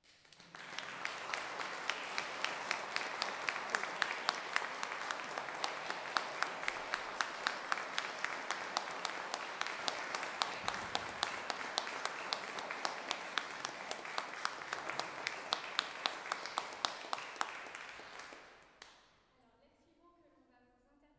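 Audience applauding, steady for about eighteen seconds with individual sharp claps standing out, then dying away near the end.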